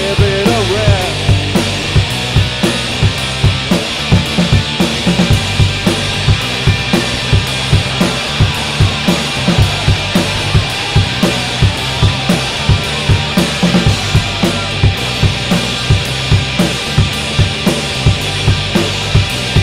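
Rock band playing an instrumental stretch: electric guitars over a drum kit keeping a steady beat.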